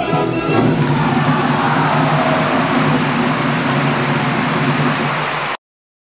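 Applause from a live opera house audience, heard over the orchestra's closing bars as the singing ends. It cuts off suddenly about five and a half seconds in.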